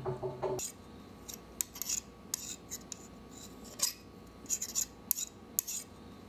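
Irregular short, sharp scrapes and clicks, about a dozen, dry and high-pitched. A low steady hum cuts off just after the start.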